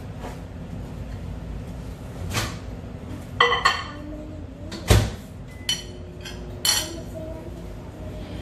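A ceramic bowl clinking as it is put into a microwave oven, the microwave door shutting with a knock about five seconds in, then keypad presses with a short beep.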